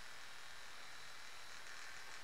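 Battery-powered makeup brush cleaner and dryer spinning a brush to fling the water off, its small motor giving a faint, steady buzz.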